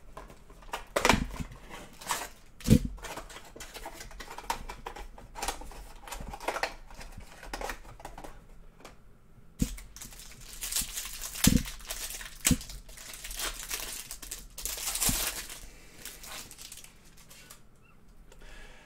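A cardboard 2019-20 Prizm Mosaic hanger box of trading cards being torn open by hand, then its stack of cards pulled out: rustling, tearing and crinkling, with a few sharp taps and knocks of the box and cards against the table.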